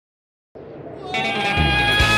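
Dead silence, then about half a second in a commercial's soundtrack fades in: a held, pitched note begins about a second in over a low rumble that keeps building.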